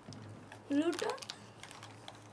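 A plastic biscuit packet crackling in the hand: a few sharp, scattered clicks and crinkles, with a short spoken word about a second in.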